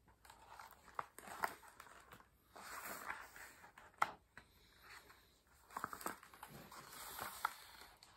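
Faint paper rustling and a few soft clicks as a hardcover picture book is handled and its page turned.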